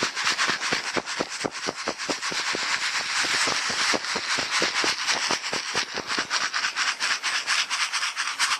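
Dry sand and gravel hissing and rattling in a plastic gold pan shaken rapidly, about five shakes a second. This is dry-panning: the vibration walks the light material off the pan's edge while the heavy gold settles against the riffles.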